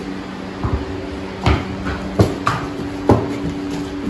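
Several sharp knocks and clunks at irregular intervals as a horse is led into a wooden stall, over a steady low hum.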